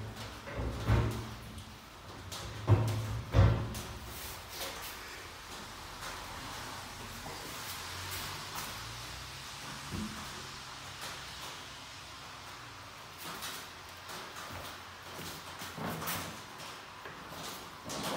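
Knocks and clunks from handling frames and the lid of a stainless steel honey extractor, several in the first four seconds. After that comes a fainter steady noise with a few light clicks.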